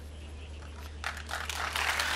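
A live studio audience beginning to applaud about a second in, the clapping building up over a steady low hum.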